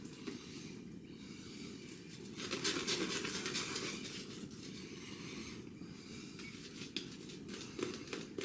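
Carnavis & Richardson two-band badger shaving brush swirling lather over the face and stubble, a soft, wet scratching, loudest from about two and a half to four seconds in.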